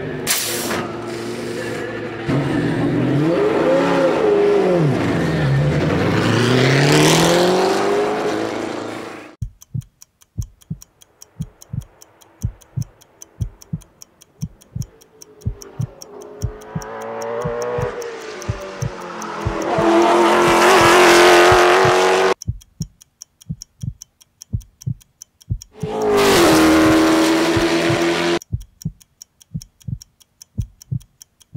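Race car engines at full throttle, their pitch dropping and rising again as they work through the gears, then giving way to a regular thudding beat of about two a second, like a heartbeat. Two more loud bursts of engine noise cut in over the beat and stop abruptly.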